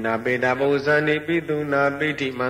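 A man's voice chanting Pali Buddhist verses (paritta recitation): one continuous phrase of quick syllables sung on a nearly level reciting pitch.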